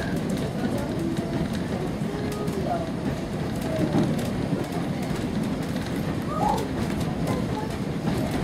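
Steady rumble and rattle of a railway carriage running along the track, heard from inside the coach.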